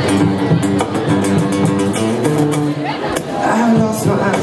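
Two acoustic guitars strumming and picking an instrumental passage of a live song, with steady sustained chords.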